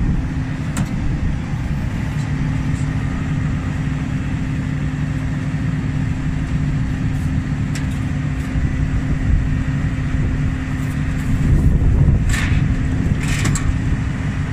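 Engine idling with a steady, even drone, with a few sharp metal knocks about a second in and a cluster of clanks near the end as a sheet-metal guard is fitted back in place.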